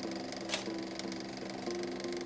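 Soft background music of held, sustained notes that shift every second or so, with a short whoosh about half a second in.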